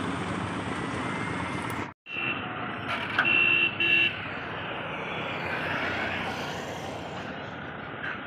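Roadside traffic noise with a vehicle horn honking: a short toot about two seconds in, then two quick honks a second later.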